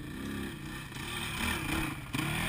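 Dirt bike engine revving up and down under load as the bike climbs a steep dirt trail, growing louder as it comes close.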